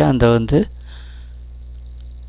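A short spoken word at the start, then the recording's steady background: a low hum with thin, steady high-pitched whining tones.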